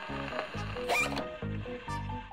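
Rhythmic scratchy rasping, about two strokes a second, from a gramophone's tone arm resting on a spinning shellac record with no needle in its soundbox, so no music plays from it. Background music runs under it.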